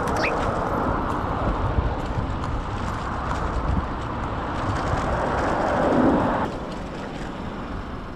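Steady wind rushing over a moving rider's camera microphone, with low road noise beneath. The rush drops off sharply about six and a half seconds in.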